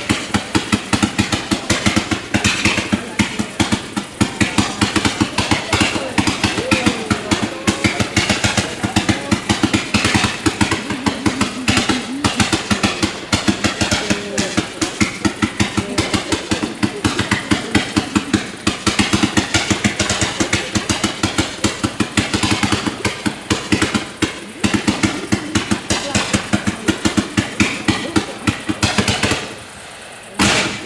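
Fireworks display firing continuously: a rapid, unbroken string of sharp reports and crackles, several a second, that eases briefly near the end.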